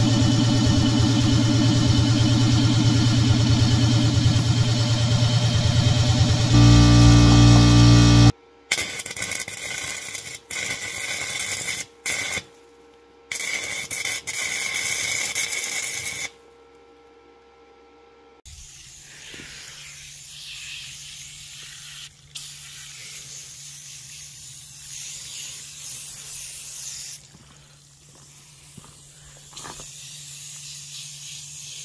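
A portable air compressor running for about eight seconds, then MIG welding in several stop-start bursts of hissing crackle, then a low steady hum.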